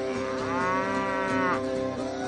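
A cow mooing once: a single call of about a second and a half that rises and then falls in pitch, over steady background music.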